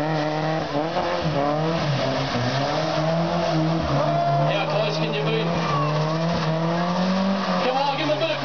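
Ford Escort engine held at high revs through a burnout, its pitch wavering, climbing slightly and then dropping near the end, while the spinning rear tyres squeal on the tarmac.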